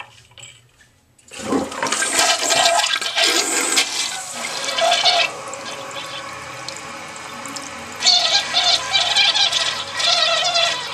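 Gerber Aquasaver toilet being flushed: after a short quiet start, water rushes loudly into the bowl about a second in. It eases to a steadier swirl about five seconds in and surges again near the end.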